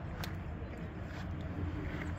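Steady low outdoor rumble, of the kind left by wind on the microphone or distant traffic, with a single sharp click about a quarter second in.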